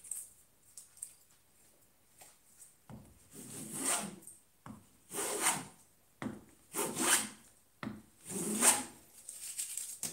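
Metal bench plane cutting wood in four separate strokes of about a second each, starting about three seconds in, with a few light knocks before them. They are short stop shavings taken from the high middle of a slightly crowned board to flatten it.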